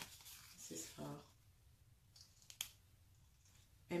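Faint rustling and scraping of packaging and stretchy fabric as shapewear shorts are taken out and handled, with a short murmured voice about a second in and a single sharp click a little after two and a half seconds.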